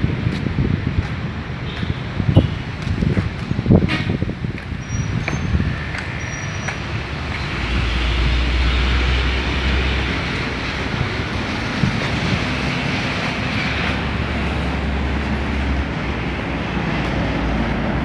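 Road traffic noise from vehicles passing, heard as a steady haze with two longer stretches of heavier low rumble in the middle. A few sharp knocks come in the first four seconds.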